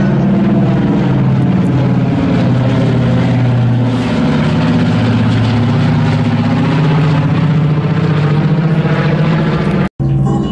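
Radial piston engines of a B-29 Superfortress running as the four-engine bomber passes overhead, a steady loud engine sound; it cuts off abruptly just before the end.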